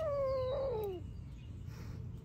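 A young kitten's long, drawn-out meow that falls in pitch and trails off about a second in.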